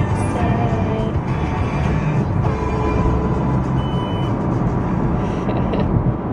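Steady road and engine rumble inside a moving car's cabin, with faint music over it.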